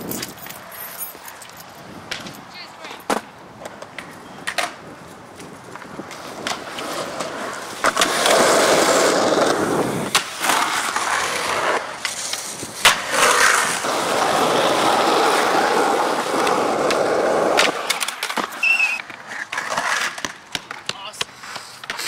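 Skateboard wheels rolling on concrete. The rolling turns loud and steady about eight seconds in and fades near the end. Along the way come sharp clacks of the board striking concrete, the loudest a little past the middle, as the skater goes at a concrete ledge.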